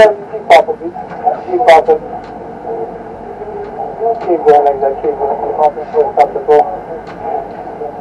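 A voice coming over a crane operator's two-way radio in short phrases, a few near the start and more from about halfway on, over a steady low hum: the banksman's instructions for the lift.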